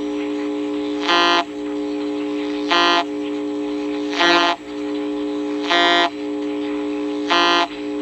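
Vega RP-240 portable radio's speaker playing a received signal: a steady buzzing tone with a louder, brighter beep repeating about every second and a half, five times.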